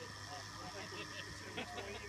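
Indistinct background chatter of several people talking outdoors over a steady low hum, with a few faint clicks.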